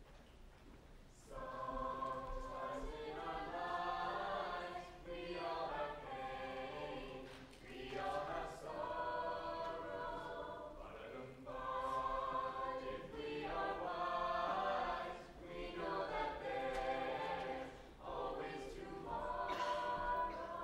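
A cappella vocal group of young men and women singing in harmony, starting about a second in, in phrases with short breaks between them.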